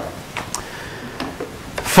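Dry-erase marker rubbing and squeaking on a whiteboard in a few short strokes as a word is written.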